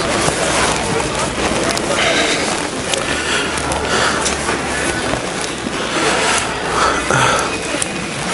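Indistinct voices behind a continuous rustling and scraping noise close to a helmet-mounted microphone.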